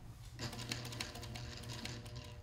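Industrial sewing machine stitching through layered upholstery fabric: a fast run of needle clicks over a steady motor hum, the stitching starting about half a second in.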